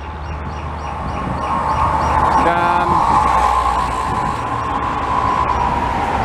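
Toll-road traffic: a steady low rumble with a passing vehicle's whine that swells from about a second in and fades near the end.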